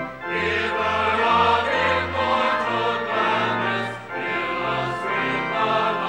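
Choir singing sacred music over sustained bass accompaniment, with a short break between phrases about four seconds in.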